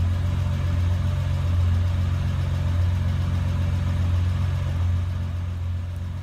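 2009 Honda Accord engine idling steadily with a low, even hum, shortly after being started by remote starter.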